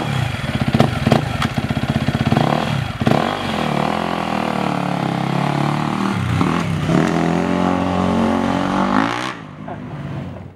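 Dirt bike engine running just after being started, at first with an uneven, popping idle and a quick blip of the throttle. After about three seconds it settles into a steadier run, the revs dipping and rising as the bike is ridden off. The sound cuts off suddenly near the end.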